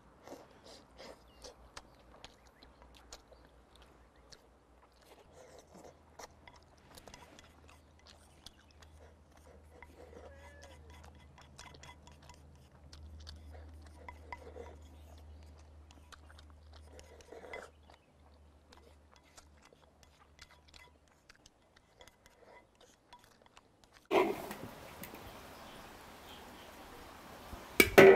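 Close, faint eating sounds: chewing braised pork belly, with small clicks of wooden chopsticks against a ceramic bowl. Near the end comes a sudden thump, then a steady hiss.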